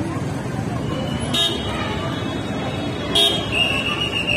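Road traffic with vehicle horns honking: two short toots, one about a second and a half in and one about three seconds in, then a longer held horn note near the end. People's voices sound behind the traffic.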